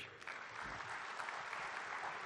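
Audience applauding at the end of a speech: steady clapping from many hands.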